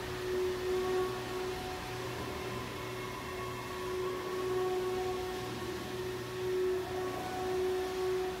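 A steady drone: one held tone that swells and fades over a faint hiss, with fainter tones above it.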